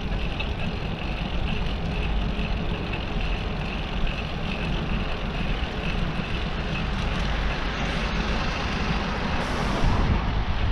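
Steady traffic noise from a busy city road, heard from a moving bicycle, with a heavy low rumble throughout. A short hiss comes just before the end, in keeping with a bus's air brakes.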